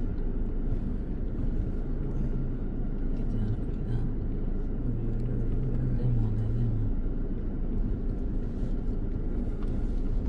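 Car interior noise while driving on a rough dirt road: a steady low rumble of engine and tyres, with a hum that fades out about seven seconds in.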